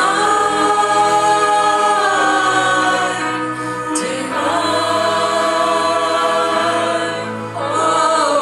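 A small mixed group of men's and women's voices singing a gospel song in harmony into microphones, holding long notes, with a new phrase beginning about four seconds in and another near the end.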